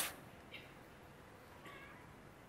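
Quiet room tone with two faint, brief high-pitched squeaks, one about half a second in and a slightly longer one near the end.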